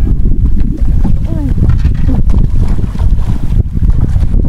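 Wind buffeting the microphone on an open boat, a loud, uneven low rumble, with faint voices under it.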